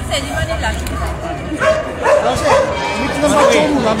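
A dog barking several times amid crowd chatter, the barks coming more often in the second half.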